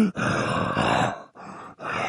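A human voice performing a werewolf transformation: a rough, breathy grunt lasting about a second, then quieter breathing before another grunt begins near the end.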